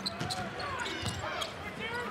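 Basketball being dribbled on a hardwood court, over steady arena crowd noise.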